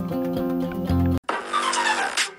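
Background music stops abruptly about a second in and gives way to a logo-intro sound effect: a whoosh with several falling tones sweeping down.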